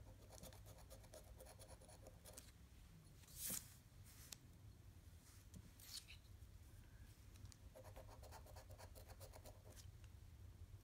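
A large metal coin scraping the coating off a scratch-off lottery ticket: quiet, rapid scratching in spells, strongest near the start and again near the end, with a brief louder noise about three and a half seconds in.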